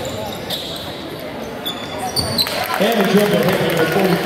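Basketball game on a hardwood gym floor: a ball bouncing and short, high sneaker squeaks, with indistinct voices from about three seconds in.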